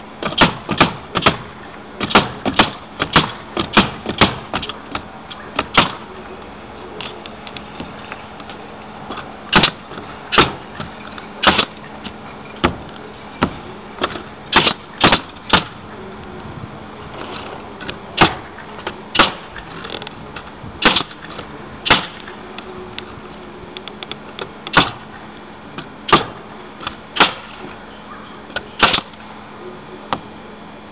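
Pneumatic nail gun shooting nails into 5/8-inch OSB roof decking, each nail a sharp shot. There is a quick run of shots over the first six seconds, then shots spaced about a second apart.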